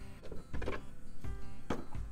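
Background music with a steady beat and held tones, with a single sharp click near the end.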